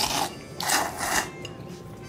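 A person slurping thick tsukemen noodles from a bowl of dipping broth, in three quick noisy pulls within the first second and a half.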